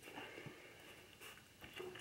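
Near silence: quiet room tone with a few faint, soft ticks.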